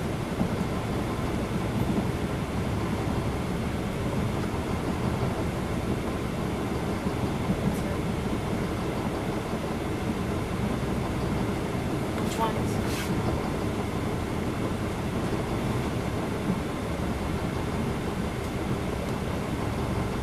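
Cabin sound of a 2010 NABI 416.15 transit bus standing still, its Cummins ISL9 inline-six diesel idling with a steady low rumble. A few short clicks come about twelve to thirteen seconds in.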